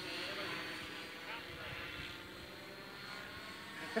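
Outrage Fusion 50 electric RC helicopter flying at a distance: a faint, steady rotor whir with a thin motor whine, its headspeed held by the governor at 1,953 rpm.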